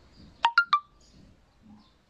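Three short pitched tones in quick succession, each starting sharply and dying away within a fraction of a second, the second one highest: a three-note chime or beep.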